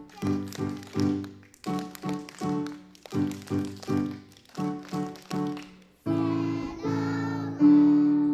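Electric keyboard playing short, detached chords in a steady rhythm, with children clapping along. About six seconds in, it moves to longer held chords.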